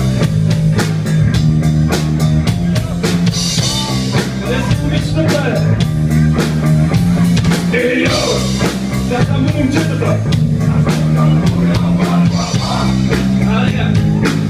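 Live rock band playing loud and steady: drum kit, electric guitars and sustained bass notes, with a man singing into a microphone over them.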